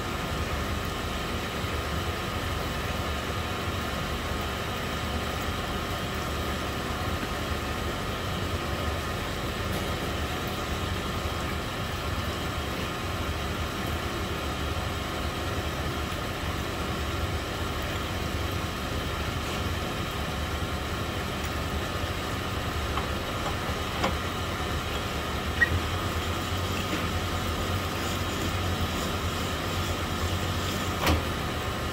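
Piston pin-honing machine's motor running steadily, a constant low hum with a faint whine, while piston pin bores are honed; a couple of light clicks come near the end.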